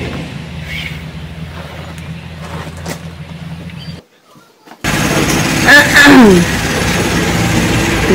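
A low steady hum, then a short break about four seconds in, followed by a person's voice whose pitch bends and glides.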